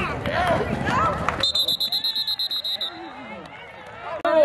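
Shouting voices from the sideline and stands during a football play, then a referee's pea whistle trilling for about a second and a half, blowing the play dead after the ball carrier is tackled.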